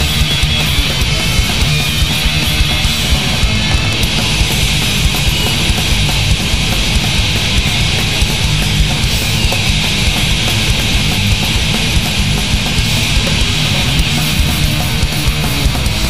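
Crust punk band playing a loud recording: heavily distorted electric guitars over fast, dense drumming, continuous and without a break.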